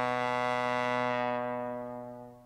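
A low brass note, trombone-like, held steady and fading away in the last half second. It is the drawn-out closing note of a descending 'sad trombone' comic cue.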